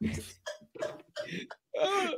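A man laughing hard in short, breathy gasps, one after another, after a single spoken word at the start.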